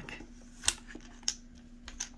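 Handling of a stack of gilt-edged tarot cards: three sharp clicks, a little over half a second apart, as cards are drawn off the deck.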